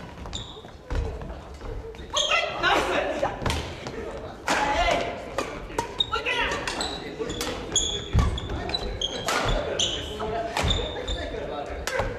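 Badminton doubles rally on a wooden gym floor: sharp racket-on-shuttlecock hits and thudding footwork, with many short high shoe squeaks, in an echoing hall.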